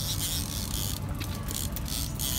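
Lake trout splashing at the surface as it is netted beside the boat, with scraping and rubbing sounds partway through, over a steady low rumble from the boat's motor.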